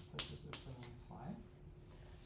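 Faint clicks and short strokes of drawing on a board, the sharpest click about a fifth of a second in, with a low voice murmuring faintly underneath.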